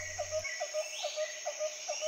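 Background nature ambience: a short chirp repeating about three times a second, like insects, over a steady soft hiss.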